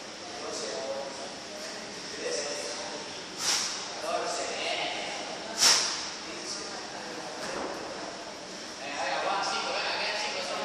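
Two sharp thuds of a dumbbell hitting a rubber floor mat during dumbbell snatch reps, about three and a half and five and a half seconds in, the second louder.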